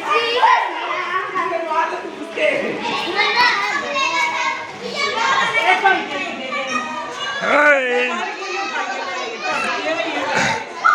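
Children shouting and calling out as they play, several young voices overlapping, with one wavering, swooping cry about three quarters of the way through.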